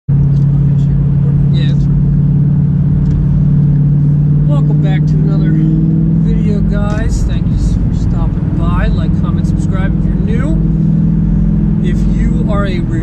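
Car engine and road noise droning steadily inside the cabin while driving; the drone changes pitch about seven seconds in. A man talks over it in the second half.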